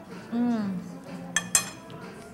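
A metal fork clinking twice in quick succession against a ceramic plate, about a second and a half in, with a short ring after each. Just before, a brief appreciative hummed 'mmm' of someone tasting food.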